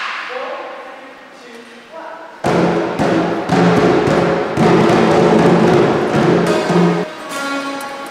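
Children's percussion ensemble playing hand drums, drum kit and cymbals: a struck hit at the start rings away, then the whole group plays loudly from about two and a half seconds in and stops about seven seconds in.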